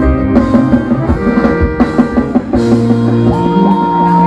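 Reggae-rock band playing live through a concert PA: drum kit and guitar in an instrumental passage, with a long held high note coming in a little past the middle.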